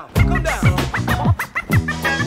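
Hip-hop beat with a DJ scratching a record on a turntable: quick repeated back-and-forth scratches over the drums and bass.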